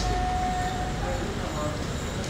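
Convoy cars and SUVs moving off slowly, with a steady engine and road rumble and people talking around them. A single steady tone is held for about the first second.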